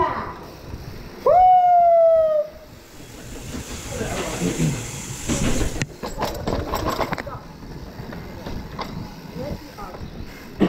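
A long, high-pitched shout from a rider about a second in, held for about a second and falling slightly in pitch. Then the rattle and sharp knocks of mountain bikes rolling through a paved alley, with a cluster of knocks about six seconds in.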